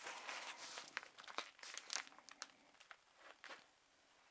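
Faint crinkling and rustling of plastic record sleeves as a stack of picture-disc LPs is handled and shuffled, with a few light clicks; it dies away near the end.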